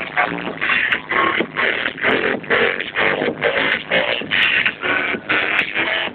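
Loud electronic dance music from a DJ set played over a nightclub sound system, with a steady beat of about two pulses a second.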